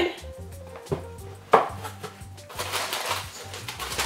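Cardboard box flaps being handled, with a couple of short knocks, the sharpest about a second and a half in. Then tissue packing paper rustles as it is lifted out of the box.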